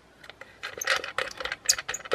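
Quick, irregular small metallic clicks and scrapes as a bare wire end is worked by hand into a small plug connector. They start about a quarter second in and get busier, with a few brief high metallic pings among them.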